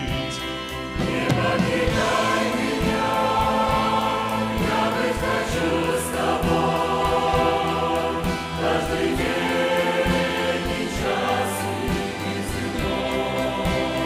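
Large mixed choir of men's and women's voices singing a Russian hymn in sustained chords, swelling about a second in.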